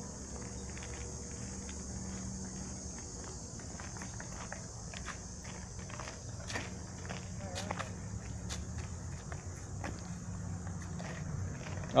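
Quiet outdoor background: a steady low rumble with scattered faint clicks and ticks, and a brief faint voice a little past the middle.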